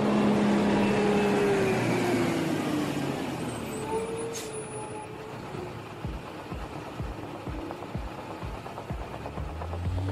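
Heavy diesel vehicle, a container reach stacker, running with a whine that falls in pitch over the first few seconds and then settles lower. Regular sharp clicks, about two a second, come in during the second half.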